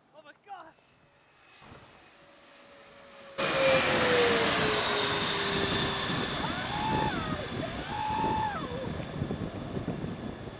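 Jet airliner on landing approach passing low overhead. Its engine roar and high whine come in abruptly about three and a half seconds in, loud, with a tone that slowly falls in pitch as it goes over.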